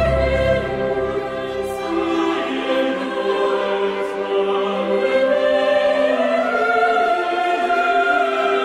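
Choir singing long, slowly moving notes with orchestra in a late-Romantic oratorio. The deep bass drops away about a second in, leaving the upper voices and instruments.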